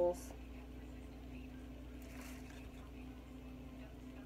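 Quiet room tone with a steady low hum and a few faint rustles.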